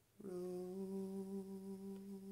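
A man humming one long, steady note that comes in a moment after the start with a slight scoop up into pitch.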